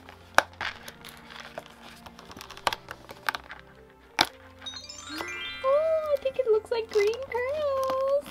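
Perforated cardboard advent-calendar door being pried open with a fingernail: a handful of sharp cracks and clicks as the card gives, over soft handling noise. About five seconds in, a smooth melody starts.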